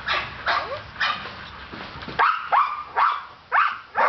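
A dog barking, a string of short barks about two a second, each dropping in pitch.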